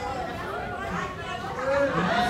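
Several people's voices talking over one another: indistinct chatter, with no clear words.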